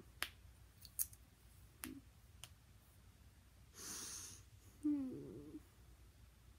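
Four light clicks, spaced roughly half a second to a second apart, then a breathy exhale close to the microphone and a short voiced hum with falling pitch near the end.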